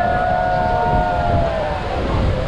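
Steady rushing noise of the waterfall and its spray, with wind on the microphone, overlaid by long held cries from several voices that die away about one and a half seconds in.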